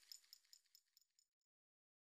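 Near silence: a few faint, quick ticks with a thin high ring fade out within about the first second, then dead silence.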